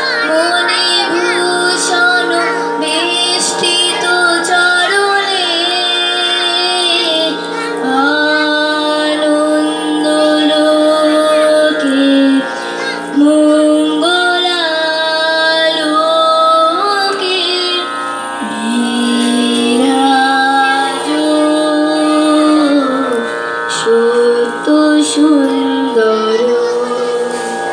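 A slow song with long, held, ornamented sung notes that glide between pitches, over a steady instrumental drone.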